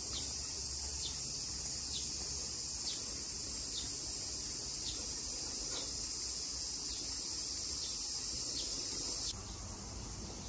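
Cicadas buzzing in a steady, high-pitched chorus, with a faint falling note repeating about once a second. The buzz cuts off sharply near the end.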